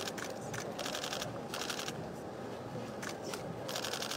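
Camera shutters firing in rapid bursts of clicks, one burst after another with short gaps between.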